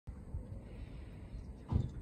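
Faint low background rumble, with a short bump about three-quarters of the way through.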